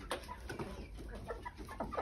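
A small flock of backyard laying hens clucking softly, a scatter of short, quiet calls, as the birds crowd close expecting treats.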